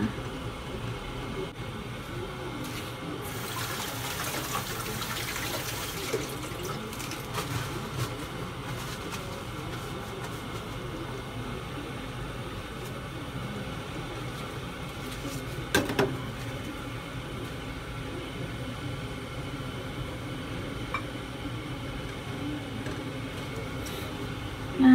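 Water rushing, loudest and hissiest a few seconds in, then settling to a steady low rush. A single sharp knock comes past the middle.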